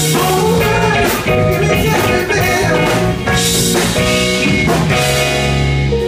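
Live band playing with electric guitar and drum kit.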